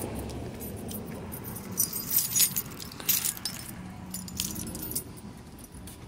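A bunch of keys on a lanyard jangling in the hand while walking, in irregular short jingles that are loudest about two and three seconds in.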